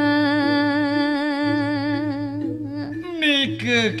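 A single voice chanting a Balinese geguritan verse in the Pupuh Sinom metre, holding one long, wavering, ornamented note. Near the end it moves into a few shorter gliding notes.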